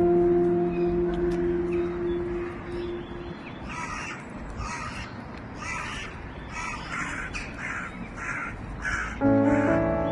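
A bird giving a run of about a dozen short calls, roughly two a second, starting a few seconds in. Background music frames it: a held note fades out at the start and piano comes back in near the end.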